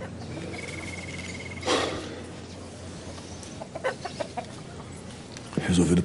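Bird calls over steady background ambience: a short high trill in the first two seconds, a loud single call just before the two-second mark and a few short calls around four seconds in. A man's low voice sound comes near the end.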